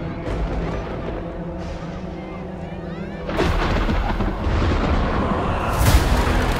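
Trailer score under a beach scene, then, from about three seconds in, a loud deep rumbling and crashing sound effect that swells to a sharp hit near the end, as ice bursts up out of the sea.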